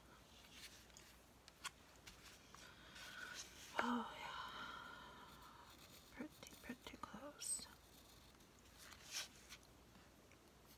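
Faint taps and scratches of a mechanical pencil tracing around a paper template on corrugated cardboard, with paper and cardboard shifting under the hands. About four seconds in, a brief low murmured voice is the loudest sound.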